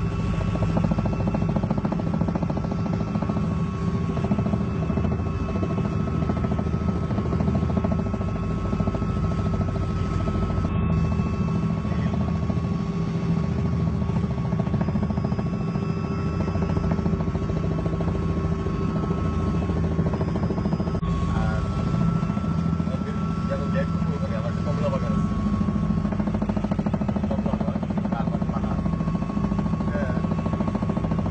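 Steady, loud engine and rotor drone heard from inside a helicopter cabin in flight, with a low rumble and a few constant whining tones over it.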